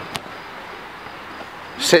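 Steady background hiss of an outdoor pitch with a single sharp click just after the start; a man's voice comes back in near the end.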